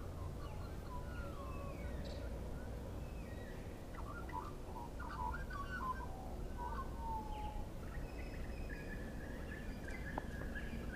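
Australian magpies (black-backed) carolling: bursts of warbling, gliding whistled notes, busiest about four to seven seconds in, with a higher held note near the end, over a low steady rumble.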